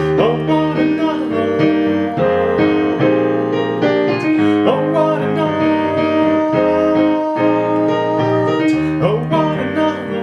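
Digital piano played with both hands: sustained chords and a moving melody, with new notes struck every fraction of a second.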